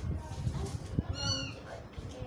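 A kitten meows once, a single short high-pitched call about a second in, over faint handling noise.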